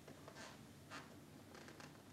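Near-silent room tone with a low steady hum, broken by a few faint clicks of laptop keys: one about half a second in, one about a second in, and a quick run of three near the end.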